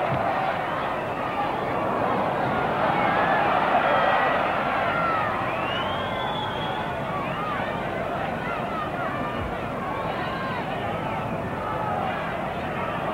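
Large football-ground crowd shouting continuously from the terraces, with individual shouts standing out over the din and a brief swell a few seconds in.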